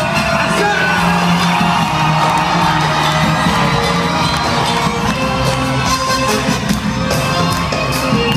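A live band playing loud amplified music, with electric guitar and drums, over a cheering, whooping crowd, heard from among the audience.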